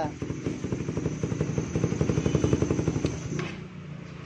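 Suzuki Raider R150 Fi's single-cylinder engine running through an open exhaust pipe with the silencer removed, a fast, uneven exhaust beat. About three and a half seconds in it drops to a quieter, steadier low hum.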